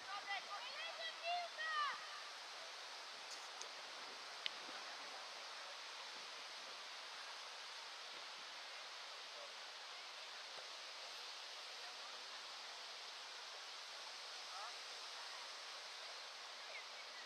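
Distant shouts of players on a football pitch during the first two seconds, then a steady outdoor hiss with one sharp knock about four and a half seconds in.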